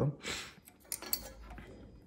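A few faint, short metallic clicks about a second in, as multimeter test probe tips are set against battery terminals.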